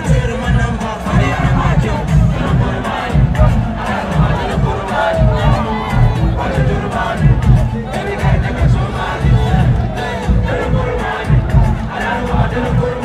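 Live concert sound over a stadium PA: a loud, steady bass beat with a crowd shouting and singing along.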